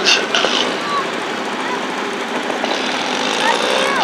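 Small garden tractor engine running steadily and roughly under load as it drags a weighted stoneboat sled.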